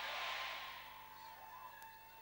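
The tail of a man's loud shouted phrase dying away in a hall's echo over about the first second. After that, low room noise with a faint steady tone.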